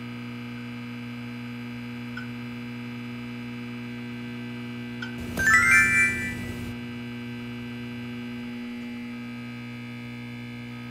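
Steady electrical hum throughout, with a couple of faint clicks. About five seconds in comes a loud, brief sound effect with a quick rising run of bright chime-like tones.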